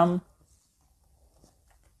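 The last syllable of a spoken word, then near silence: a pause in the talking.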